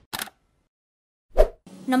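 Logo intro sound effects: a brief blip at the start, then a single sharp, deep pop-like hit about a second and a half in. A woman starts speaking right at the end.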